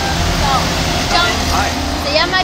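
People talking over a steady low rumble of road traffic.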